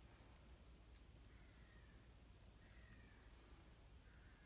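Near silence: quiet room tone with a few faint, small clicks.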